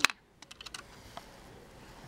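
Plastic Lego pieces clicking as they are handled: one sharp click right at the start, then a few lighter clicks about half a second to a second in.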